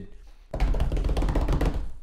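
A low, rumbling knocking noise made of many rapid small knocks. It starts about half a second in and cuts off suddenly just before the end.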